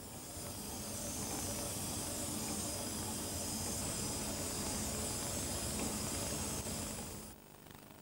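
Experimental wafer-stepper stage rig running: a steady hiss with a faint low hum. It fades in during the first second and cuts off sharply a little after seven seconds.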